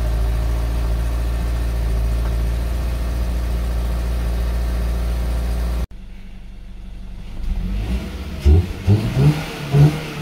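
Toyota GR86's flat-four engine idling steadily, heard at the exhaust tailpipe. After a sudden cut about six seconds in, the engine is heard from inside the cabin with the car in park. From about eight and a half seconds in it is blipped in several quick revs.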